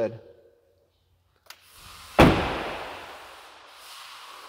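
A door on a Ford F-250 crew cab pickup shut with a single loud slam about two seconds in, its sound dying away over a second or so, with a faint click just before.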